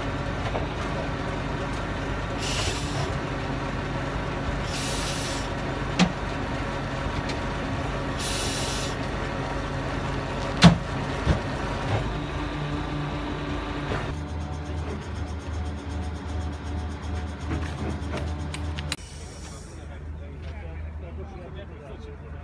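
A heavy diesel engine running steadily close by, with three short air hisses in the first half and two sharp metallic knocks about 6 and 11 seconds in. The engine note shifts lower about two-thirds through, and the sound drops quieter a few seconds before the end.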